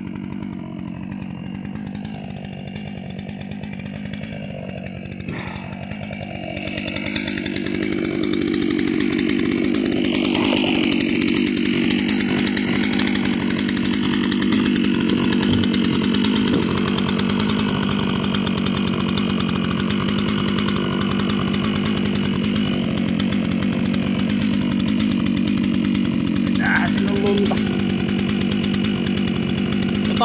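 Stihl MS 661 C-M chainsaw running steadily, growing louder and higher about seven seconds in and then holding a steady high speed.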